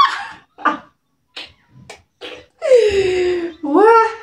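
A person's voice: a short laugh at the start, a few brief sounds, then from near the three-second mark a long drawn-out vocal sound that falls in pitch and swoops up again at the end.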